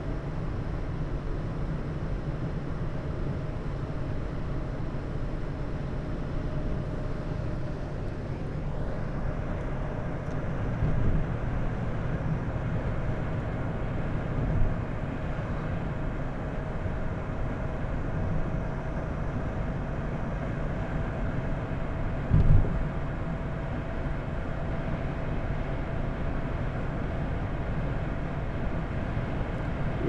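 Steady road and engine noise inside a moving car's cabin, with a faint steady whine over it. A brief thump comes about two thirds of the way through.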